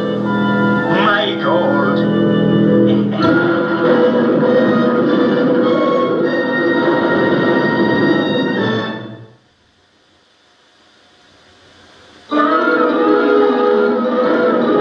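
Television soundtrack music playing through a 1978 Sears console TV's speaker. It fades almost to silence about nine seconds in, then comes back abruptly about three seconds later with a wavering high tone over it.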